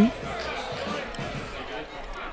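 Faint ballpark ambience between pitches: scattered distant voices from players and a sparse crowd, with a soft knock about a second in.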